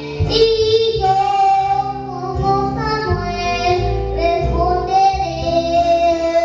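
A young boy singing through a microphone and PA, holding long notes over an instrumental accompaniment.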